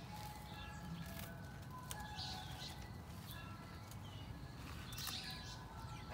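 Faint bird chirps and short whistled notes in a garden, with a few brief rustles of leaves as Swiss chard stalks are cut by hand with a knife.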